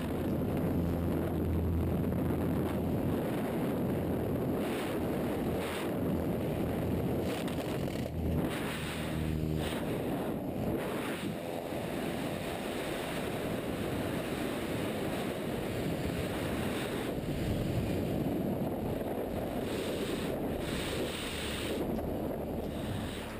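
Steady rush of freefall wind buffeting a skydiver's helmet-camera microphone.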